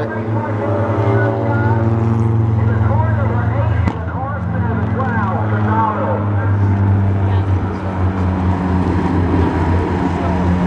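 Tuner-class race cars' engines running on the track, a steady low drone throughout, with indistinct talking over it for the first half or so.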